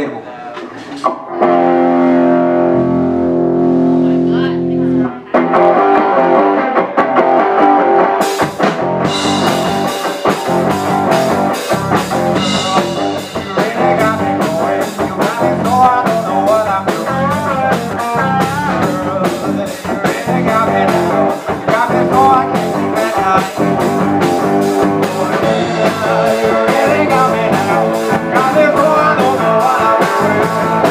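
Live blues-rock band starting a song: a single chord is held for a few seconds, then the full band comes in with electric guitar, bass and drums about five seconds in, with cymbals joining a few seconds later.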